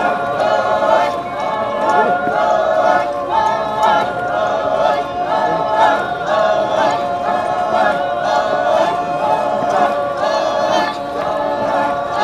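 Unaccompanied group singing of a Rengma Naga folk dance song: many voices chanting together in short phrases that repeat in a steady rhythm.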